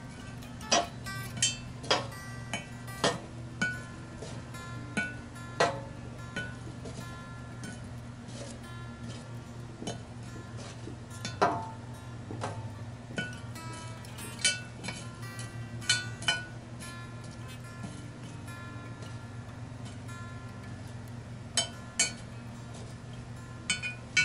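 Metal tongs setting charcoal briquettes one by one onto a number 10 Lodge cast-iron Dutch oven lid: a scattered series of sharp clinks. Soft background music plays underneath.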